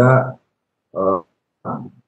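Only speech: a man talking finishes a phrase, then gives two short, halting syllables.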